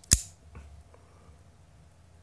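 Hinderer XM-18 folding knife flicked open with a snap of the wrist: the blade swings out and locks open with one sharp, loud click. Its light, older-style detent lets the blade be shaken out this way.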